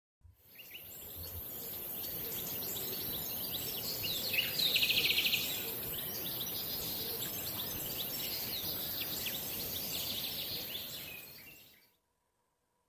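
Hot water poured in a thin stream from a gooseneck kettle into a ceramic teacup holding a tea bag: a steady splashing trickle full of small bubbly chirps, busiest about four to five seconds in.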